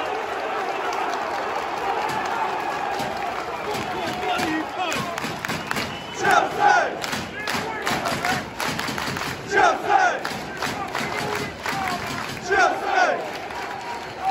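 Football stadium crowd cheering and singing, with fans clapping close by from about five seconds in. A loud two-beat chant is shouted nearby three times, about three seconds apart.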